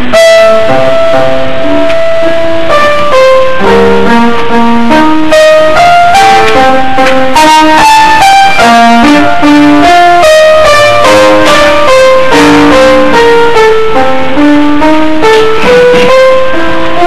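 Grand piano played solo and loud: a single-note melody moving over lower accompanying notes, opening on one long held note.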